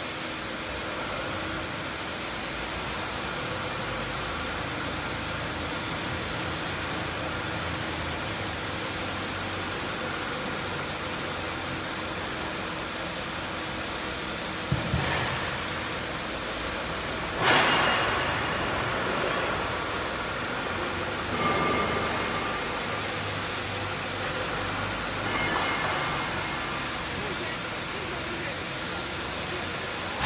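Steady hum of workshop machinery with a faint steady tone under it. A single thump comes about 15 s in, then a louder, brief rush of noise a couple of seconds later, followed by two softer swells.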